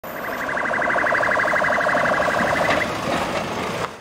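Police vehicle's electronic siren sounding a fast, evenly pulsing tone for about three seconds, then fading out under street noise.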